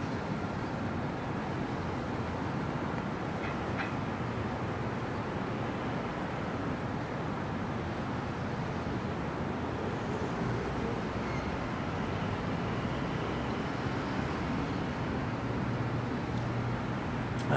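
Steady city background noise heard from a rooftop: a low, even rumble of distant traffic, with a couple of faint ticks about four seconds in.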